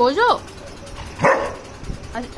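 Golden retriever vocalizing: a short whining call that rises and falls in pitch at the start, then a brief gruff bark just over a second in.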